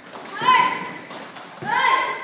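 Children's voices shouting and calling out in a large echoing hall, with two short high-pitched calls, one about half a second in and another near the end.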